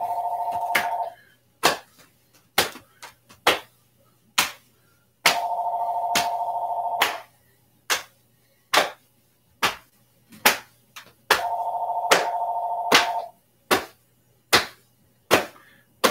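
A telephone ringing: three warbling rings about two seconds long, roughly six seconds apart. Between and under them come sharp, irregular slaps of hands patting the chest and body.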